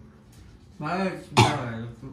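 A person makes a short vocal sound, then coughs once sharply to clear the throat about a second and a half in.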